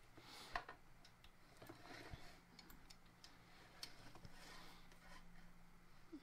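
Near silence, with a few faint, scattered clicks and taps of metal parts as an aluminium miter fence with T-nuts in its track is slid onto a miter gauge head.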